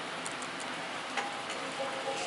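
A few light clicks over a steady hiss, then a musical toy's electronic tune starting a little past halfway with held notes.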